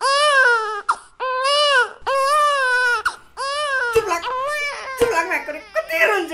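Newborn baby crying: four long, arching wails of under a second each, then shorter, broken cries near the end.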